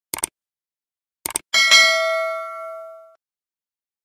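Subscribe-button animation sound effect: two quick double mouse clicks, then a bright bell chime that rings on for about a second and a half and fades away.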